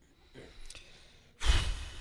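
A man lets out a loud, breathy sigh into a close microphone about one and a half seconds in, after a faint spoken "no".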